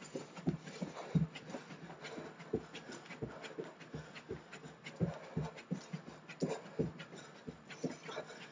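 Bare feet landing softly and repeatedly on the floor while jogging in place doing butt kicks, a couple of light thuds a second, with heavy panting breath from the exertion.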